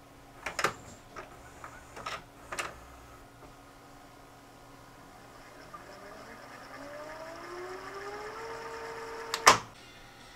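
Sanyo FWZV475F (Funai-built) DVD/VCR combo's tape transport going into rewind. A few mechanism clicks as the deck changes mode are followed by a motor whine that rises in pitch as the tape speeds up, then levels off, and a loud click comes near the end. The whine is from the replacement capstan motor, which is running smoothly.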